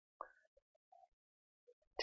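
Near silence: room tone, with one faint click near the start.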